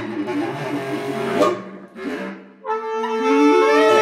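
Multitracked bass clarinet playing a three-part canon: several low lines overlap. There is a short dip in level about two and a half seconds in, and then a long held note enters near the end.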